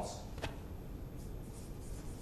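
Felt-tip marker writing on flip-chart paper: faint scratchy strokes, with one short click about half a second in.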